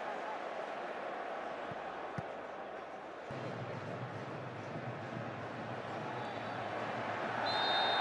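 Stadium crowd at a football match: a steady din of thousands of voices and chanting, which shifts abruptly about three seconds in. Near the end a referee's whistle blows briefly for a foul, giving a free kick.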